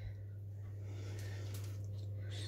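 Steady low hum with a few faint soft taps as a small metal cookie cutter and a round of dough are handled on a parchment-lined baking tray.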